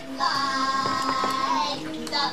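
A voice singing one long held note over music, coming from a television playing in the room.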